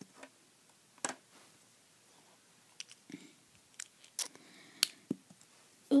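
Plastic Lego bricks and Technic parts being handled and pulled off a model: a few scattered light clicks and taps with quiet between them.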